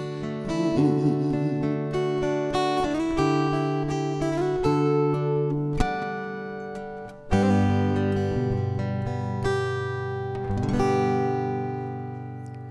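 Solo steel-string acoustic guitar playing the instrumental close of a song. A series of strummed chords builds to a hard strum about seven seconds in, and a last chord about eleven seconds in rings out and fades.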